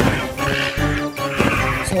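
Two harsh screeching cries from a flying dinosaur, a creature sound effect, over background music.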